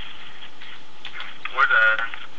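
Steady background hiss, then a brief voiced sound from a man, a short pitched syllable about one and a half seconds in.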